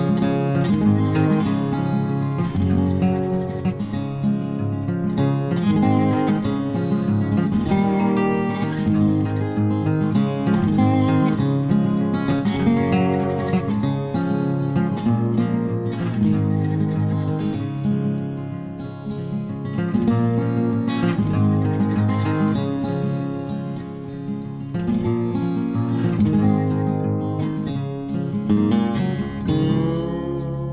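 Background music: an acoustic guitar playing a plucked melody with strummed chords.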